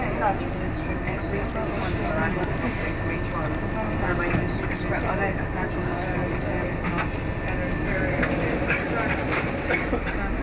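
Inside a moving double-decker bus: a steady engine and road rumble with short rattles and clicks from the bodywork and windows.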